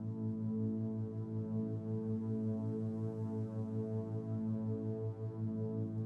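Theta 5.5 Hz isochronic tone, a low tone pulsing evenly on and off about five and a half times a second for brainwave entrainment, over a steady drone of sustained meditation-music tones.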